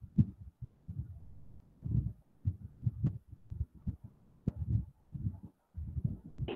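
Irregular low, muffled thumps a few times a second, with a few sharp clicks among them.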